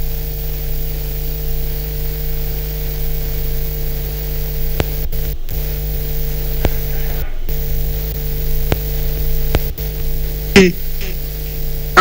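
Steady electrical mains hum with a faint buzz on the remote guest's audio line, broken by a few clicks and two brief dropouts about five and seven seconds in.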